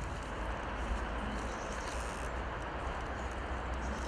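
Steady outdoor background noise: a low rumble with an even hiss over it, and a few faint clicks.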